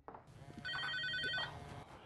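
Mobile phone ringing: one short electronic trilling ring of several high tones, lasting under a second, starting about two-thirds of a second in.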